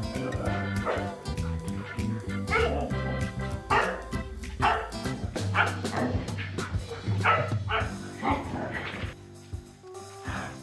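Freshly bathed huskies yipping and barking in short calls, several in quick succession, over background music.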